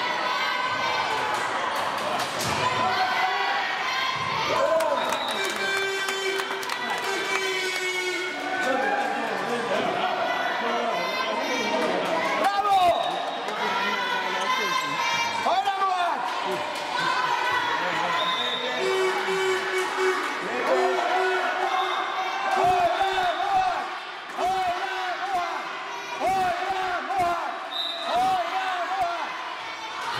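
A handball bouncing on the sports-hall floor, with players and young spectators shouting, all echoing in the hall. Late on, voices call out in an evenly repeated sing-song, like a chant.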